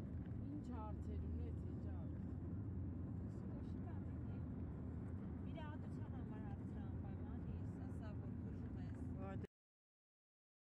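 Steady low rumble of a car driving, heard from inside it, with brief high wavering voice sounds over it now and then. It cuts off suddenly about nine and a half seconds in.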